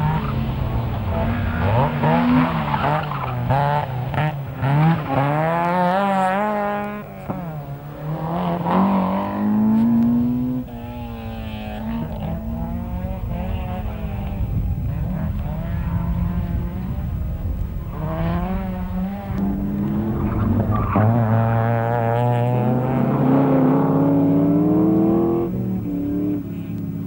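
Group N Vauxhall Astra GSi rally car's four-cylinder engine at full throttle, its pitch climbing and dropping back again and again as it runs through the gears, with a long climb near the end.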